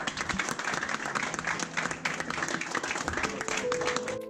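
Steady applause: a group of people clapping their hands.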